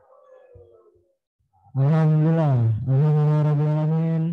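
A man's voice intoning a long, held Arabic opening recitation, starting after a near-silent first second and a half: two long sustained notes, the first sliding down in pitch before the second is held steady.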